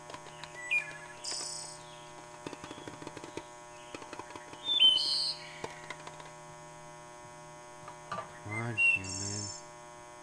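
Runs of quick taps on an aluminium soda can, an ASMR trigger, over a steady low hum, with a few brief high chirps and a short hummed voice sound near the end.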